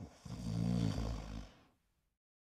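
A man snoring: one drawn-out snore lasting about a second and a half, then it cuts off.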